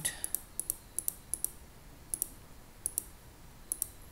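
Computer mouse buttons clicking: a dozen or so sharp clicks, often in quick pairs, spaced unevenly.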